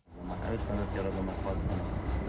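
People talking, with a vendor quoting prices, picked up by a hidden camera over a steady low rumble.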